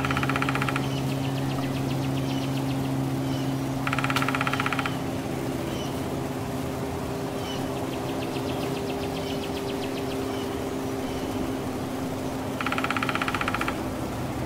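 A woodpecker drumming: three loud, very rapid rolls about a second each, near the start, about four seconds in and near the end, with fainter rolls between. A steady low hum runs underneath.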